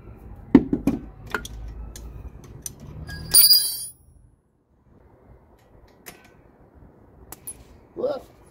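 Steel spanners clicking and knocking on a propshaft flange bolt. About three and a half seconds in, a spanner gives one loud, bright metallic clink that rings briefly. A few faint clicks follow near the end.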